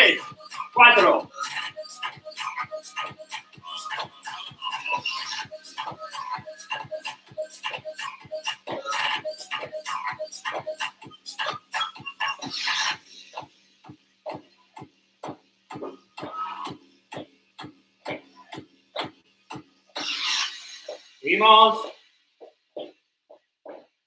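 Workout music with a steady beat of a little over two a second. The fuller music drops away about halfway through, leaving only the sharp ticking beat, and a short vocal shout comes near the end.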